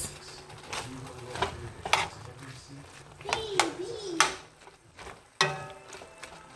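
A metal spoon stirring and breaking up ground turkey with diced onion and jalapeño in a skillet, giving a few sharp clinks and scrapes of the spoon against the pan.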